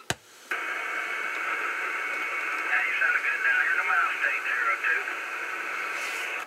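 Cobra 2000 GTL CB base station receiving a weak lower-sideband transmission through its speaker: thin static hiss that opens suddenly about half a second in, with a faint, garbled voice buried in the noise.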